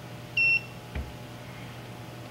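A single short electronic beep from a portable hardness tester's handheld unit: one high, steady tone lasting about a third of a second. About half a second later comes a faint click.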